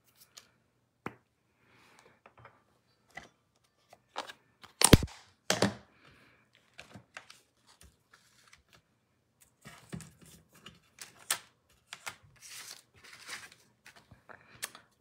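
Cardstock and small craft tools being handled on a work mat: scattered light taps and clicks, two louder knocks about five seconds in, and paper rustling near the end.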